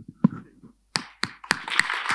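A low thump near the start, then audience applause beginning: a few separate claps about a second in, quickly filling out into steady clapping.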